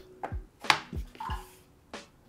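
Cloth speaker grille being fitted to the front of a small bookshelf-size speaker cabinet and the cabinet handled: a few soft knocks and one sharp click about two-thirds of a second in.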